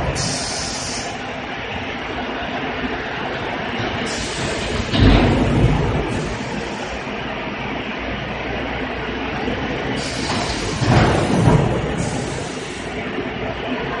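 Machinery of a PS foam (thermocol) food-container production line running: a steady mechanical din with a heavier surge about every six seconds and short bursts of hiss in between.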